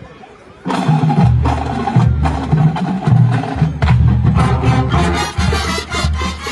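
Marching band starts playing suddenly less than a second in, loud, with brass and low-brass chords over drumline and pit percussion strokes.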